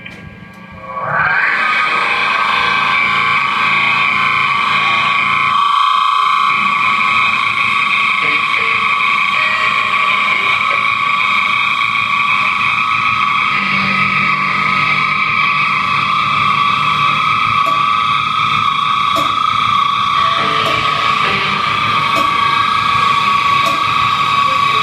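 Distorted electric guitar feedback left sounding through the amplifier and effects after the song ends: a loud, steady, high-pitched drone that swells in about a second in and holds without drums.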